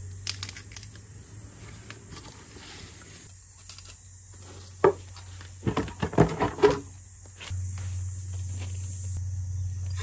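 Red plastic basins of greens being handled and set down, giving a cluster of sharp clunks and knocks in the middle, over a steady high insect buzz. A steadier, louder low rush sets in about three-quarters of the way through.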